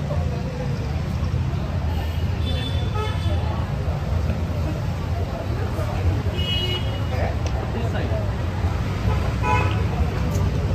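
Steady low rumble of city street traffic, with a few brief car horn toots.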